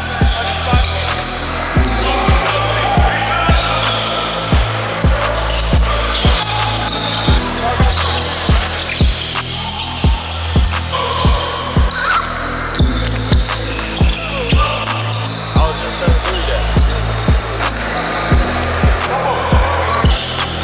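Music with a steady beat and bass line, mixed over the sounds of an indoor basketball game: a ball bouncing on a hardwood court and players' voices.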